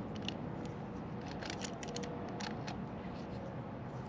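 Scattered light metallic clicks and scrapes of an adjustable wrench working the voltage selector switch on a water pump motor, turning it over from 230 to 115 volts.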